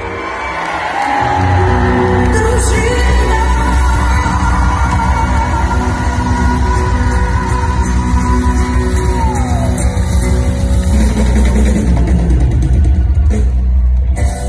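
Live Ukrainian pop music played loud in a large hall: a band with heavy bass under singing, with one long high note held for several seconds that slides down near the middle. Scattered audience shouts.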